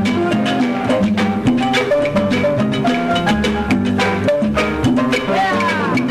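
Cuban dance-orchestra music in a salsa-like style with no singing: a stepping bass line and melodic figures over steady, even percussion, with a brief sliding note near the end.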